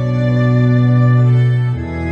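Yamaha Electone EL-900m electronic organ playing sustained chords on a church organ registration. A held bass note steps down to a lower pitch near the end.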